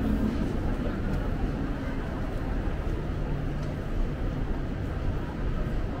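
Busy pedestrian street ambience: a steady low rumble of city background noise with the voices of passers-by.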